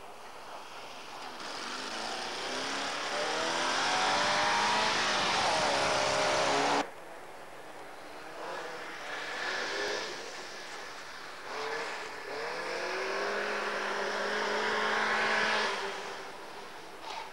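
Rally car engines at high revs on a snow stage, pitch climbing as each car accelerates through the gears. One engine rises for several seconds and cuts off suddenly about seven seconds in. Another car is heard briefly, then a third engine climbs and stops abruptly near the end.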